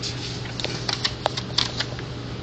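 A folded paper slip rustling and crinkling as it is handled and opened, a scatter of small crackles and clicks over a steady low hum.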